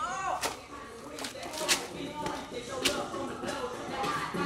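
A man's voice briefly at the start, then three sharp slaps or cracks about a second apart.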